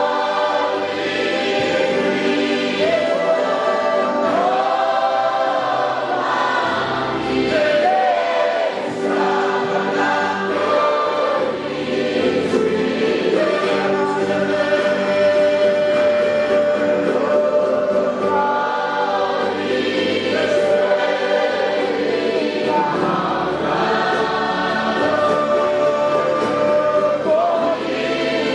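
A congregation singing a gospel worship song together, led by a man's voice on a microphone, over electronic keyboard accompaniment with a changing bass line.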